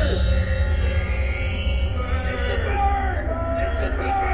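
Electronic concert music: a steady deep drone with sliding, voice-like pitched tones that bend downward over it in the second half.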